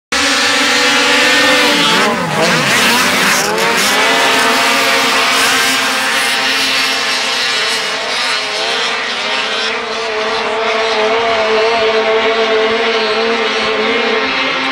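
A pack of racing snowmobiles at full throttle, many engines running together. Their pitch dips and climbs a couple of seconds in as they launch, then settles into a steady high drone as they climb the hill.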